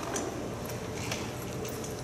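Quiet hall room tone with a few faint, scattered clicks and taps, about four in two seconds.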